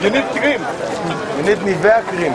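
People talking close to the microphone, with crowd chatter around them.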